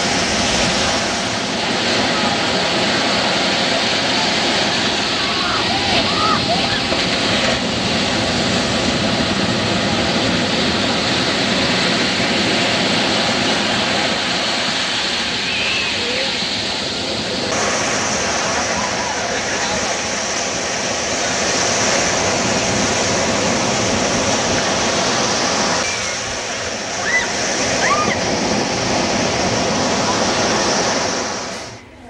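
Ocean surf breaking and washing ashore, a loud, steady rush of water, with indistinct distant voices now and then. The sound changes abruptly a little past halfway.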